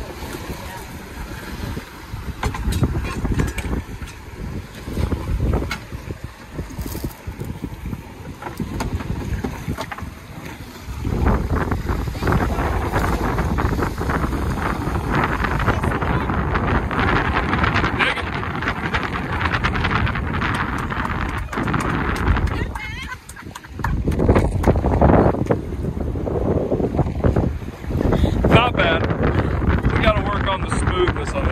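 Strong wind blowing across the microphone in gusts, a loud, rumbling buffeting that dips briefly about a third of the way in and again about three-quarters through.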